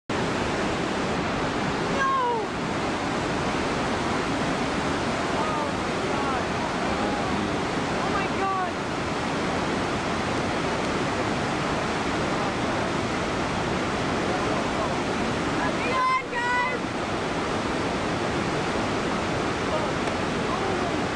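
Steady rushing roar of the big whitewater rapid at Lava Falls on the Colorado River. Faint short calls rise above it a few times: about two seconds in, several between six and nine seconds, and a cluster near sixteen seconds.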